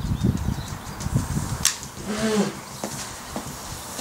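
Smokeless powder from a Winchester steel No. 2 shotshell being lit with a long lighter and burning with a soft hiss, a slow-burning powder. Uneven low rumbling in the first second and a half, and a sharp click about a second and a half in.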